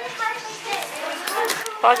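Speech only: young children and an adult talking, with a louder word near the end.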